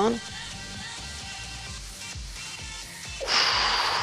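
Background workout music with a soft steady beat. About three seconds in, a loud hissing breath out lasting over a second comes in: the trainer's effort breath on a medicine-ball lift.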